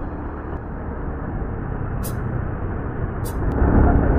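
Motorcycle on the move, heard from a handlebar camera: steady engine, road and wind noise, heaviest in the low rumble, that swells near the end, with a couple of brief clicks.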